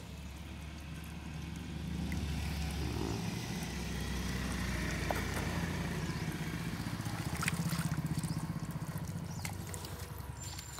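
Water flowing out of a borewell pipe, gurgling and splashing into a plastic bucket over a low, steady rumble. The rumble builds over the first couple of seconds and eases slightly near the end, with a few small splashes and clicks later on.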